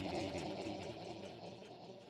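Echoing tail of a short spoken logo sting dying away, fading steadily toward silence.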